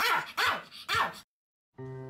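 Pomeranian barking three times in quick succession, about half a second apart. The barks stop suddenly, and after a moment of silence music comes in near the end.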